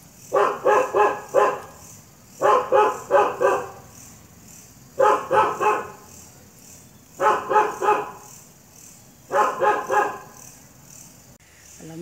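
A dog barking in five bouts of about four quick barks each, the bouts coming roughly every two seconds.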